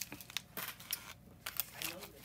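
Plastic poly bubble mailer crinkling in short, scattered rustles as it is handled and opened, with a brief lull just past the middle.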